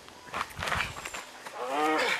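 A faint scuffle of a few soft knocks, then a person's drawn-out shout of encouragement starting about one and a half seconds in, during a tug on a rope.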